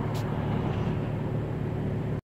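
Steady low rumble of outdoor traffic noise, with a brief hiss about a fifth of a second in.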